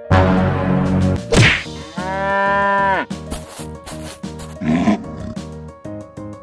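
Cartoon animal sound effects over background music: a loud rough growl at the start, a quick swoosh, then a cow mooing for about a second from two seconds in, its pitch dropping at the end. A short tiger roar comes near the end.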